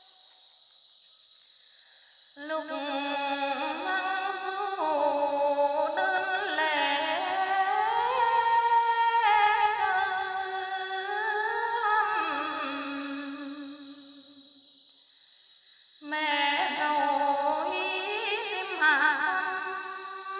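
A solo voice in a slow melody of long, wavering held notes with gliding pitch, in two phrases: the first starts about two seconds in and fades out around fourteen seconds, the second starts about sixteen seconds in.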